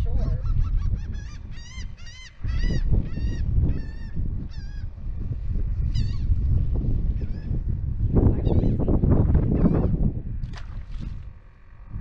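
Birds giving a quick series of short honking calls, about two or three a second for the first five seconds, then a few scattered calls. Under them, wind rumbles on the microphone, strongest about eight to ten seconds in.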